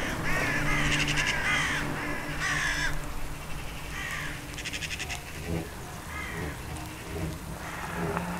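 Harsh cawing bird calls, repeated in quick runs for the first few seconds and then sparser, over a steady low hum.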